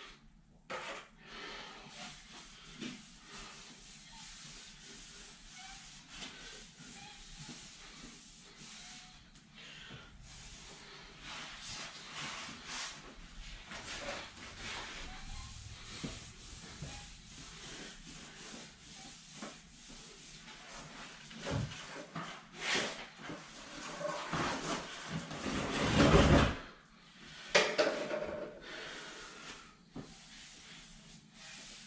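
Damp sponge wiped by hand across hexagon floor tile, a soft, irregular rubbing and scuffing as the floor is lightly dampened before grouting. Louder scuffs of movement come in a cluster near the end.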